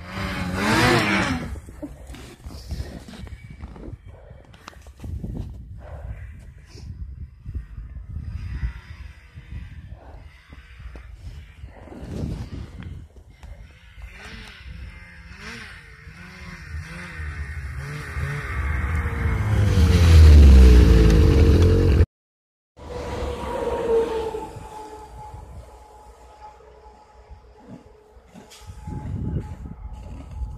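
Snowmobile engines. One passes close right at the start. Another approaches with rising engine pitch and passes loudest about twenty seconds in. After a sudden cut, a snowmobile runs at a steady idle, with rustling and clattering close by throughout.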